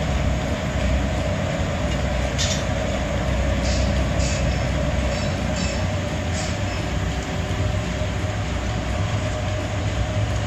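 Steady industrial rumble of a forge shop, the open gas forge furnace and machinery running, with a faint steady hum. A few faint metallic clinks come in the middle.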